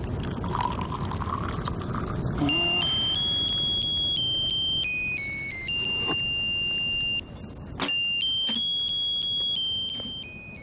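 A mobile phone ringing with a simple electronic ringtone: a melody of clear beeps stepping from note to note. It starts a little over two seconds in and breaks off briefly about three-quarters of the way through before going on. Before it comes a low rushing noise.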